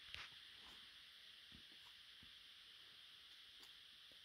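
Near silence: a faint steady hiss with a few soft taps from a climber's hands and shoes on the rock.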